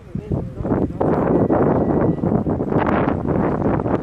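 Voices talking briefly, then from about a second in a loud, gusting rush of wind on the microphone.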